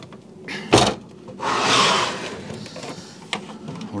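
A small aquarium with a plastic hood being handled on a wooden shelf. It knocks sharply about a second in, then scrapes for about a second as it is moved, and a light click follows near the end.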